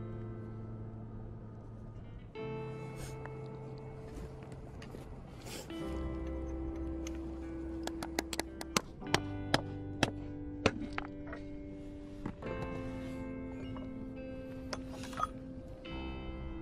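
Background music of slow sustained chords. About halfway through, a run of sharp taps as a small steel chisel is struck into the crack along an ammonite nodule's keel to split it open.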